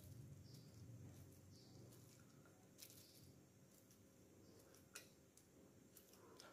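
Near silence: a knife slicing peeled bananas over a ceramic plate, with two faint clicks about three and five seconds in against low room hum.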